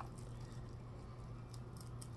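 Faint handling of plastic packaging: a few light clicks and rustles over a low, steady hum.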